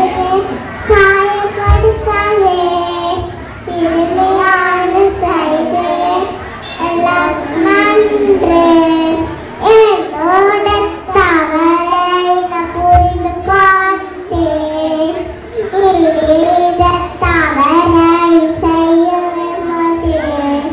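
A group of young children singing together in unison into stage microphones, their voices amplified through a PA speaker, with sustained and gliding sung notes throughout.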